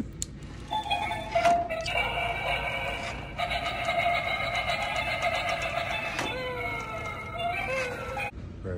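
Skeleton-dog Halloween decoration playing its built-in sound effect through a small speaker after its try-me button is pressed. A click comes just after the start; the sound effect begins about a second in, holds steady tones, and ends with falling tones near the end.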